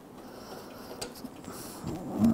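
Quiet handling noise with a faint click about a second in, as a bolt is started by hand into a lawnmower engine's muffler guard.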